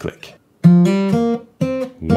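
Martin J-40 acoustic guitar in open G tuning, fingerpicked: the D string at the second fret and the open G string plucked together with a light percussive click of the thumb on a bass string. It is played twice, about a second apart; the first ringing is stopped short.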